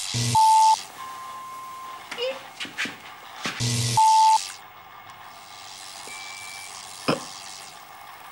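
Two short bursts of static hiss, each with a low buzz and a brief electronic beep: a signal-interference sound effect. They come near the start and again about three and a half seconds in, with fainter beeps and clicks between them.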